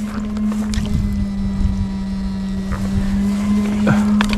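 Steady electric hum of an electrofishing shocker running, one unchanging pitch with fainter overtones, with a few short knocks and rustles from walking through the grass.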